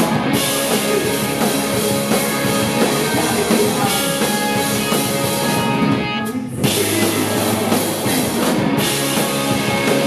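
Punk rock band playing live: electric guitars, bass and drum kit together, with no singing. About six seconds in the cymbals and high end drop out for a moment before the full band comes back in.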